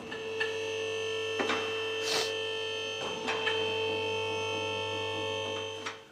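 Electric vehicle lift running as it raises a car: a steady mains-motor hum with a constant whine, and a few short knocks along the way.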